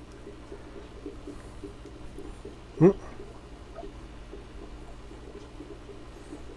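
Steady low background hum, broken once about three seconds in by a man's short hummed 'mm'.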